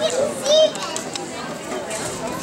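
Young children's voices and chatter, with one child's short, high-pitched call about half a second in.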